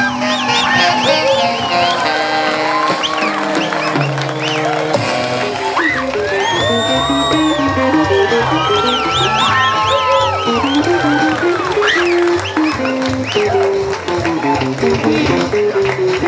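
A small live jazz group playing, with an upright double bass walking a stepped line under an archtop electric guitar.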